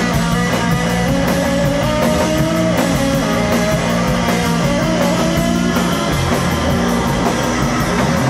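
Live rock band playing loud: electric guitar over drums, with cymbals keeping a steady beat.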